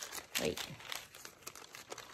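Long paper grocery receipt crinkling and crackling in the hands as it is handled, a rapid run of small crackles.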